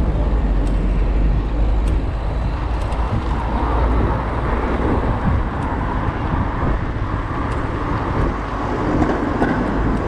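Wind rushing over the microphone of a camera on a moving bicycle, a steady low rumble, with city road traffic, cars running close alongside.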